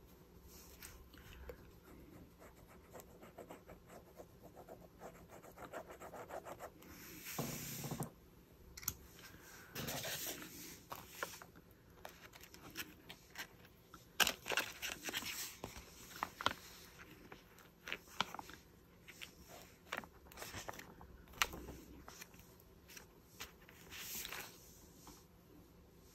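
Thin clear plastic sheet crinkling and rubbing against a paper journal page as it is pressed down with ink on it and peeled away, in short rustles and scrapes with quiet gaps between.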